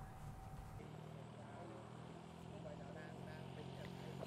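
A quiet pause with faint hiss and a low, steady hum that comes in about a second in.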